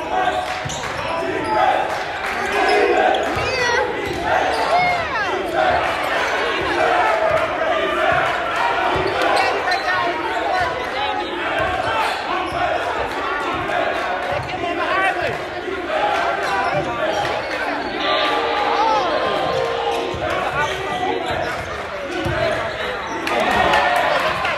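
A basketball bouncing on a hardwood gym floor during play, with short irregular thuds, under a constant chatter of many spectators' voices echoing in a large gymnasium.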